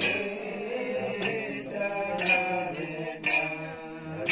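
Male jagar singer chanting a Kumaoni jagar recitation of the Mahabharata in a drawn-out, wavering sung voice, with a sharp percussion stroke about once a second keeping the beat.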